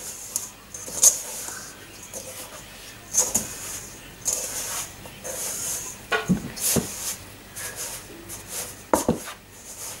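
Hands rubbing and squeezing butter into flour in a stainless steel bowl: a crumbly, grainy dough rustling in short bouts, with a few sharper knocks against the bowl.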